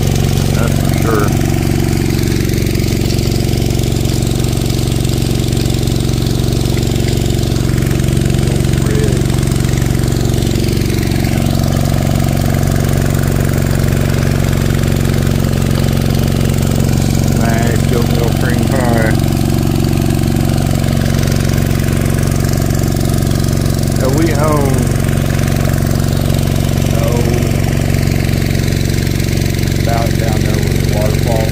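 Small gasoline engine driving a gold dredge's water pump, running steadily at one constant speed, with water rushing through the sluice. A few brief higher-pitched warbling sounds rise over the engine around the middle and later on.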